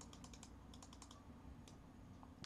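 Faint computer keyboard typing: a quick run of key clicks as a new number is entered in a settings field.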